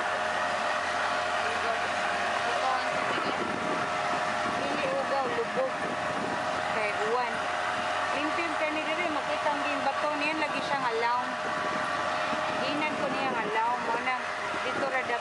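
Motorboat engine running at a steady drone while the boat moves across the river, with voices chatting over it.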